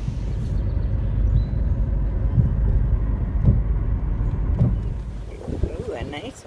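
Low, uneven rumble of a pickup truck's engine at a boat ramp, fading near the end.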